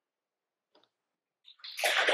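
Silence for about a second and a half, then audience applause starting up and quickly building near the end.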